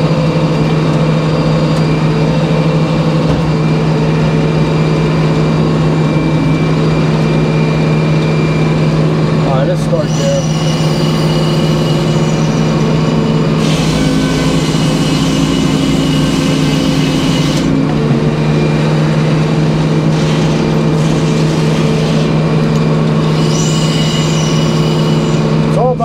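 Circular sawmill running with a steady hum, its large blade cutting boards off a black locust log. The cutting noise starts about ten seconds in, is loudest for a few seconds after that, and comes back near the end as the blade goes through the log again.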